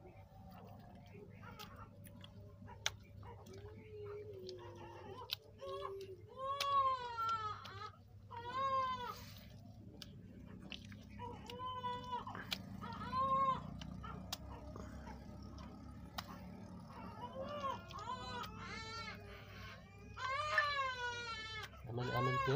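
An animal calling over and over in short rising-and-falling cries, about ten of them, several in close pairs, with faint clicks of wet clay being handled.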